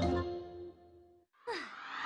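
A held musical chord fades out over the first second or so. After a brief gap, a cartoon character lets out a breathy sigh with a falling pitch near the end.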